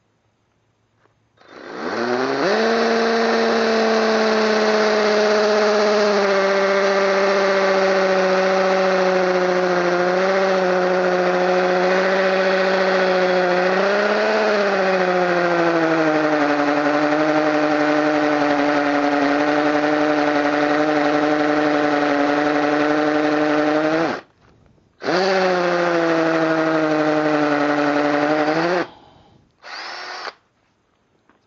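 Chicago Electric 18-volt cordless 1/2" hammer drill running under load, drilling into masonry with a small masonry bit. Its pitch sinks slowly as it runs for about 22 seconds. It stops briefly, then runs again for about four seconds.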